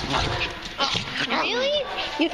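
Dogs vocalizing in close play: a few short, high-pitched calls that rise and fall in pitch in the second half, with scuffling and rustling before them.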